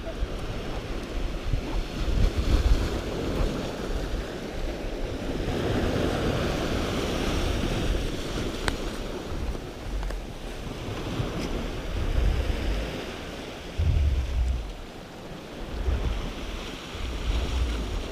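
Sea waves breaking and washing over a rocky shoreline, a steady surf that swells a little through the middle, with gusts of wind buffeting the microphone.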